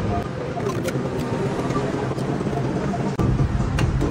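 Light metallic clicks and knocks as a tiller's steel handlebar joint is seated on its bracket and a locking pin is pushed through, over a steady background rumble that grows louder about three seconds in.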